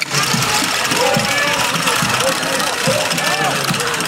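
Many voices talking and calling out close by over a steady high rattle and jingle, which is the bells on the belts of masked carnival costumes.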